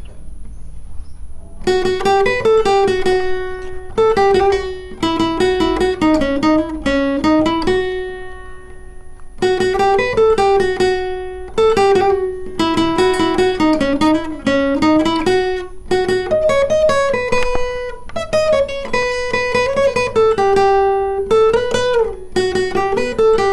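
Acoustic guitar playing a single-note picked melody, with hammer-ons, pull-offs and slides between notes. It starts about two seconds in and runs in phrases, with a short pause near the middle.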